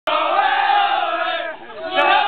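A football team's players chanting together in a victory celebration: a long held group shout that drops away briefly near the end before the next chant starts.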